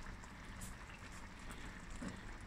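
Thick black-eyed bean curry simmering in a steel pot, faint bubbling with small scattered pops.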